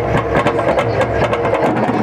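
Live folk music: a seated ensemble of tuned struck percussion playing a fast, busy rhythm without a break.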